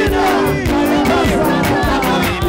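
Live gospel worship music with a fast, steady beat, and a group of singers on microphones singing and shouting excitedly over it.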